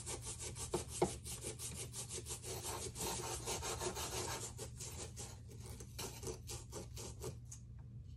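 A knife and small digging tools scraping and cutting into crumbly dig-kit blocks, a fast run of short rasping strokes that thins out near the end.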